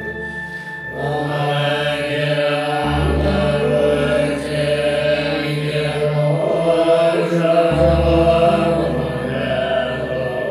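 Tibetan Buddhist prayer chanted over a musical accompaniment of sustained low notes. The chanting voice comes in about a second in.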